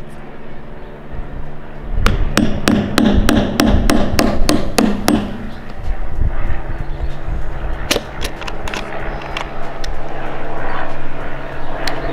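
Small hammer tapping a pin punch to drive the roll pin out of a car key blade held in a metal key jig: a quick run of light, sharp taps, about five a second, lasting some three seconds, then a few scattered clicks.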